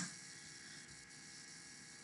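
Faint room tone with a steady low electrical hum.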